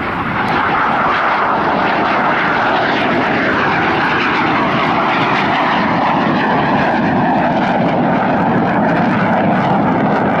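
A BAE Hawk jet trainer's turbofan engine running steadily as the jet flies past, a continuous loud jet noise. A tone within it dips in pitch about three to four seconds in.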